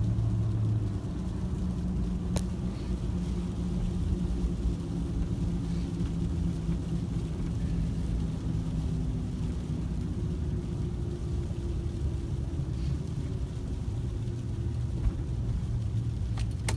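Road vehicle driving, heard from inside the cabin: a steady low rumble of engine and road noise, with engine tones drifting slowly in pitch. A single sharp click comes about two and a half seconds in.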